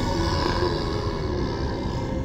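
Spooky title-sting sound effect: a deep rumbling drone with an airy hiss above it that fades away near the end.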